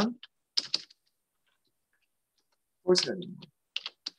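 A few keystrokes on a computer keyboard, in short clusters about half a second in and again just before the end, with a brief spoken word around three seconds in.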